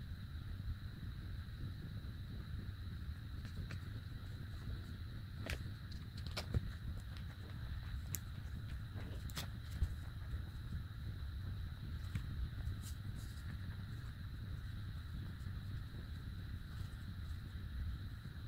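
Faint handling noise from hand-sewing a crocheted piece with a needle and yarn: a few soft, scattered clicks over a steady low hiss and a thin high whine.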